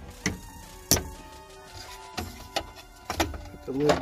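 Short, sharp plastic clicks and knocks as the fuel pump's electrical connectors are pushed home and the metal access cover is handled: about six separate clicks, the loudest about a second in.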